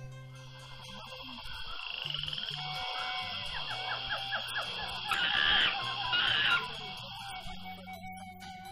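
Tropical forest animal sounds. A steady high-pitched hiss runs through, with a quick run of rising chirps about two seconds in and two louder rasping calls after about five seconds.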